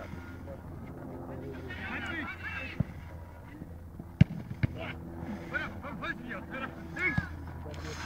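Distant shouts and calls of players and onlookers across a football pitch, with a few sharp thuds of the ball being kicked, the loudest about four seconds in.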